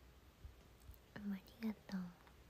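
A woman's voice murmuring quietly under her breath: three short, soft syllables in the second half, over faint room tone.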